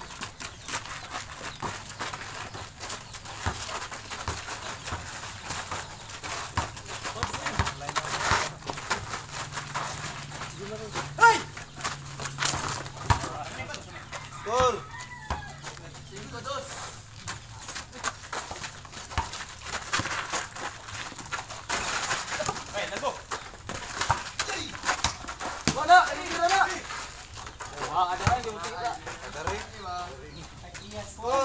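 Outdoor pickup basketball: players' voices calling out in short bursts, with the knocks and thuds of the ball and feet on the court, the sharpest about a third of the way in and again near the end.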